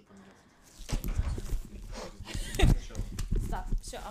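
A person's voice speaking, mixed with several sharp clicks or knocks, starting about a second in after a near-quiet opening.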